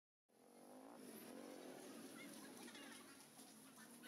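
A small motor vehicle's engine running faintly as it travels along a road, its pitch wavering up and down, heard from on board.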